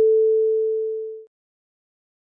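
A single pure electronic tone, held steady at one pitch, slowly fading and then cutting off about a second and a half in.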